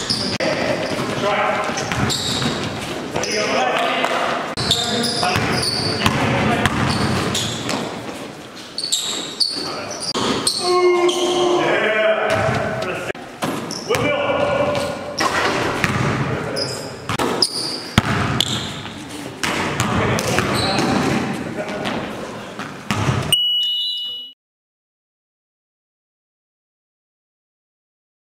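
Indoor basketball game in a gym hall: players' voices with a basketball bouncing on the hardwood floor, echoing in the hall. Near the end a short steady high tone sounds, then the sound cuts off suddenly.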